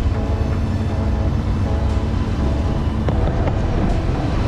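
A sailboat's auxiliary engine running steadily under way, a continuous low rumble, with music playing over it.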